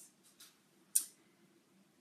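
A single short, sharp click about a second in, with a fainter tick just before it, against quiet room tone.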